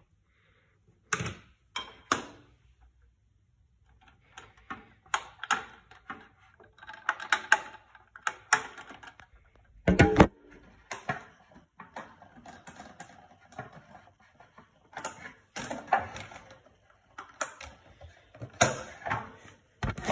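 Irregular clicks, knocks and rattles of a plastic bulkhead light fitting and its 2D fluorescent lamp being handled, with the loudest knock about halfway through.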